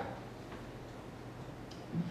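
Quiet room tone picked up through the microphones, with a steady low hum.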